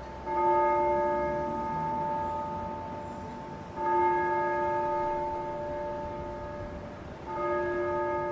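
A single bell tolling the same note three times, about every three and a half seconds, each stroke ringing on and slowly fading before the next.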